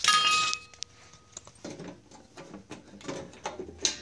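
A sharp metallic clink right at the start that rings on for about a second, followed by faint handling noises and small clicks and knocks.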